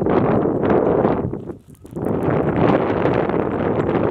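Wind buffeting the microphone in gusts, with a brief drop about a second and a half in.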